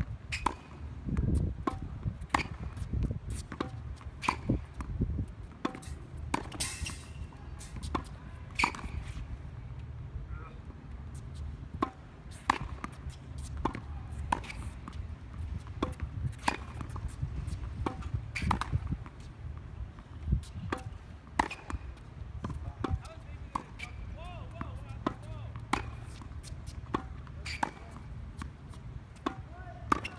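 Tennis balls struck by rackets and bouncing on a hard court during a rally, with many sharp pops about one a second at uneven spacing, over a steady low rumble.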